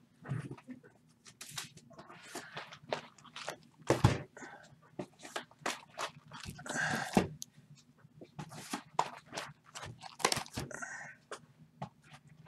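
Sealed cardboard trading-card boxes being handled, set down and stacked on a table: scattered light knocks, taps and rustles, with a heavier thump about four seconds in and another near the end.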